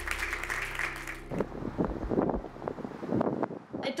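Applause with steady music under it, cut off about a second in. After that, gusts of wind buffet the microphone.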